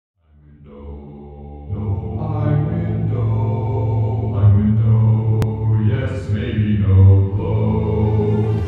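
Low, droning chant-like music that fades in from silence and grows louder about two seconds in. Its long held notes change pitch every second or so.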